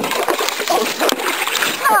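Canoe paddle blades slapping and scooping the river water, sending up a run of loud, overlapping splashes.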